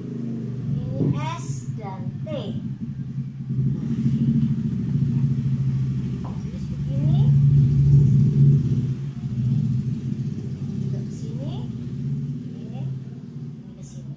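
A motor engine running with a steady low rumble, growing louder to a peak about eight seconds in and then easing off.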